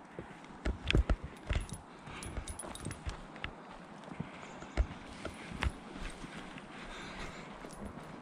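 A hiker's footsteps on a packed-dirt forest trail: uneven soft thuds, bunched more closely in the first half.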